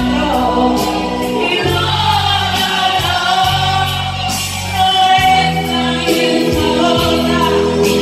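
Women singing karaoke into microphones over a recorded backing track with bass and drums, their voices amplified through the PA.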